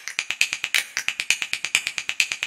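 Logo-animation sound effect: a rapid, even run of crisp ticking clicks, about ten a second, high in pitch.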